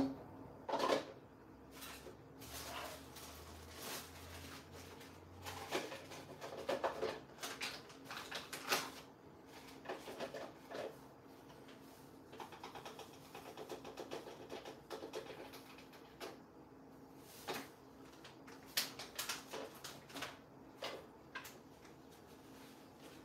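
Faint, scattered clicks and knocks of household items being handled out of view, over a low steady hum.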